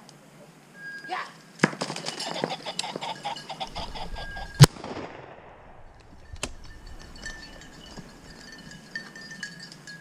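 A shotgun shot about four and a half seconds in, the loudest sound here, sharp with a short ringing tail, taken at a flushed rooster pheasant; it is preceded by about two seconds of busy clattering noise. A fainter sharp crack follows about two seconds after the shot.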